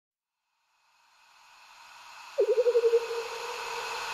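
Synthesized intro sound effect: a swelling hiss that builds up, then about halfway through a mid-pitched tone that flutters rapidly for half a second before settling into a steady, fading hum.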